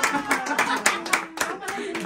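A few people clapping by hand, quick irregular claps that thin out near the end.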